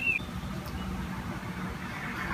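Faint, steady outdoor background noise with a low hum, opening with a single short high chirp.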